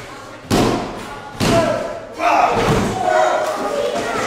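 Wrestling-ring canvas slapped hard twice, about a second apart, by a referee's hand counting a pinfall, followed by shouting voices.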